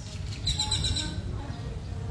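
A bird calling: a short, high call about half a second in, over a steady low rumble of outdoor background noise.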